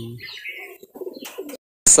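Domestic pigeons cooing faintly, cut off suddenly near the end.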